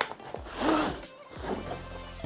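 Cardboard tripod box being opened by hand and the padded nylon carry bag slid out of it: a brief rustling, scraping slide of cardboard and fabric about half a second in, with quiet background music underneath.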